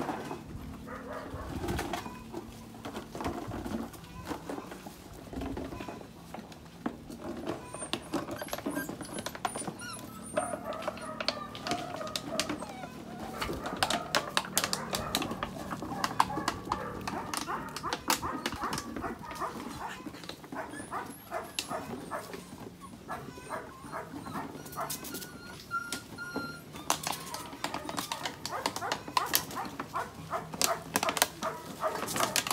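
Puppies playing rough together, with scattered small barks and yips over the scuffling and clicking of their paws and mouths. Birds call faintly in the background.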